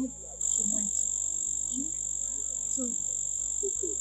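Night ambience of frogs croaking in short, scattered calls over a steady high-pitched whine, starting about half a second in.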